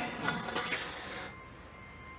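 Rubbing and rustling of a stainless steel exhaust Y-pipe being turned over in the hands, fading out in the first second or so, followed by faint steady tones.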